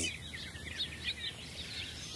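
Faint birds chirping, several short chirps, over a soft steady hiss of outdoor ambience.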